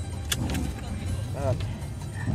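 Vehicle engine idling, a low steady rumble heard from inside the cab, with a brief sharp click near the start.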